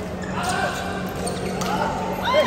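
Badminton play in a large hall: a sharp racket hit on a shuttlecock about half a second in, over echoing court noise and players' voices.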